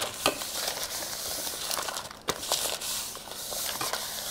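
Buttery wrapper paper being rubbed around the inside of a parchment-lined metal cake pan: a steady rustling scrape, with a couple of light knocks against the pan.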